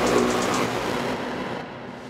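Techno track in a breakdown: the kick drum and bass drop out and a hissy synth wash fades steadily away.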